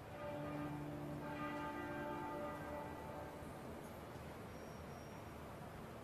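A large bell tolling: the note starts suddenly and rings on with several overtones, fading away over about three seconds.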